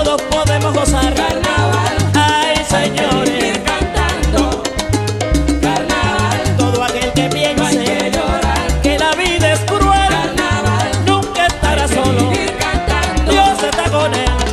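Background salsa music with a repeating bass line.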